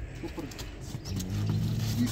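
One low moo from the cattle, lasting about a second and starting about halfway through.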